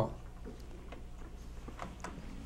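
Quiet room tone: a steady low hum with a few faint ticks.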